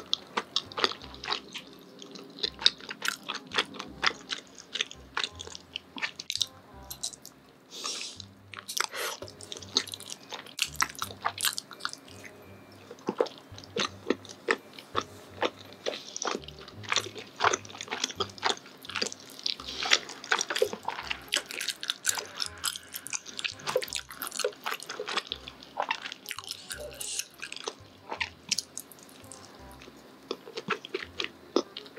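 Close-miked chewing and biting of chewy rice-cake tteokbokki: a dense, steady run of sharp, quick mouth clicks and smacks.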